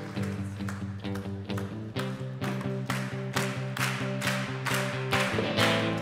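Live rock-style band playing an instrumental intro: sustained low chords under a steady beat of about three sharp strikes a second, which grow stronger from about two seconds in.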